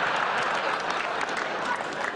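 Audience applauding, a dense steady patter of many hands clapping that eases slightly toward the end.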